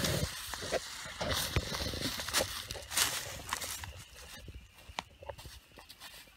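Dry leaf litter crackling and rustling as a person shifts, gets up off the forest floor and steps through the leaves. It is busiest for about the first four seconds, then thins to a few scattered crackles.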